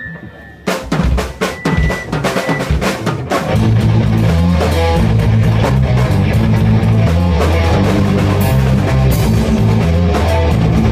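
Live amplified rock band starting a song. Drum hits begin about a second in, and about three and a half seconds in the full band enters: drum kit, bass and electric guitars playing a steady heavy riff.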